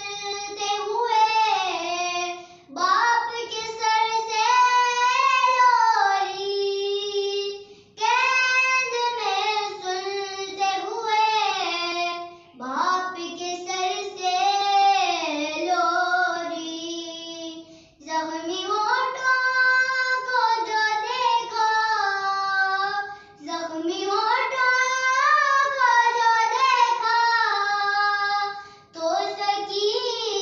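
A young girl singing a noha, a Shia Muharram lament, solo and unaccompanied, in long melodic phrases with short pauses for breath about every five seconds.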